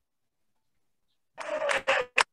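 Dead silence for over a second, then a woman's voice starts near the end, heard over a video call.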